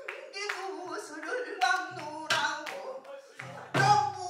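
Female pansori singer singing in a held, bending voice, accompanied by a few sharp strokes on the buk barrel drum, the loudest near the end.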